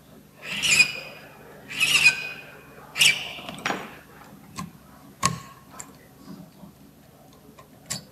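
A file rasping across a key blank in three strokes about a second apart, during key impressioning, followed by several sharp metal clicks and taps.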